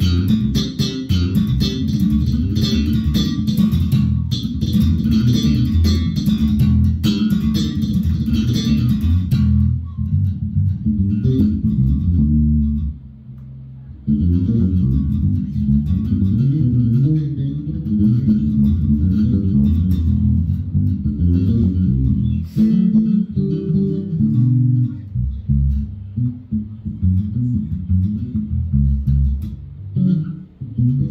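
Fender Jazz Bass played fingerstyle through an amplifier, with the bass boosted on its EQ: a run of bass lines, brightest and most percussive in the first stretch, with a short lull a little before the middle.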